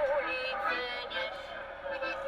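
A recorded song of the Polish women's strike played back over a loudspeaker, a singing voice holding wavering notes over music.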